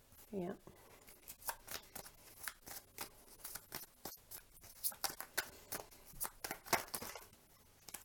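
Tarot cards being shuffled by hand: a quick, irregular run of light card flicks and clicks that stops about a second before the end.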